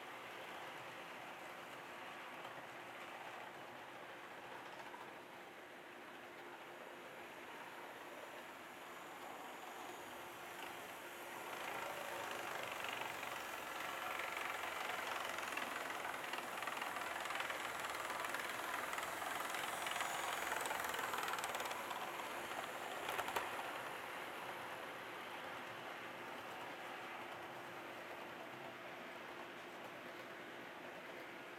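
HO scale model trains running on the layout's track, a steady rolling and motor sound that grows louder from about twelve seconds in as the trains pass close, peaks around twenty seconds, then falls back. A few sharp clicks come near the peak.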